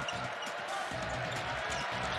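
Basketball being dribbled on a hardwood court, repeated bounces over the steady noise of an arena crowd.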